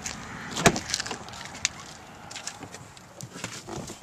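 A 2014 Chrysler 200's front door being opened: one sharp clunk of the latch and handle about two-thirds of a second in, then a few lighter knocks and clicks as someone climbs into the seat.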